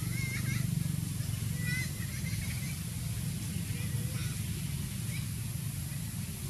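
Short, high, squeaky animal calls in little bursts: a cluster right at the start, another about two seconds in, and fainter ones later, over a steady low rumble.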